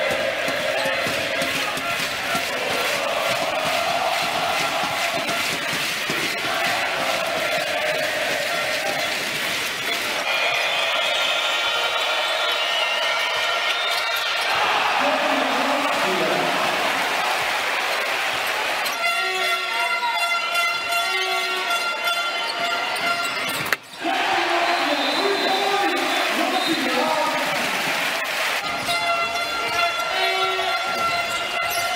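Basketball game audio: arena crowd noise with a basketball being dribbled on a hardwood court, and stretches of music with held tones at times. The sound cuts out for an instant about two thirds of the way through.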